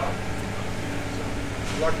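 Steady low mechanical hum with a few pitches held level, and a brief voice near the end.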